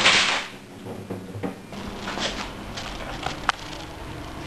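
A small LCD monitor, knocked off its perch by a coilgun projectile, crashes and clatters onto a desktop; the noise dies away within about half a second. A few faint ticks follow.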